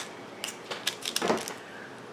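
Desk handling sounds of a paper seed envelope and a marker pen on a wooden tabletop: a few light clicks and taps with soft paper rustling.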